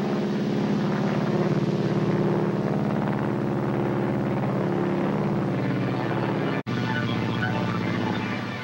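Bomber's piston engines droning steadily in flight, a sustained engine hum that drops out for an instant near the end.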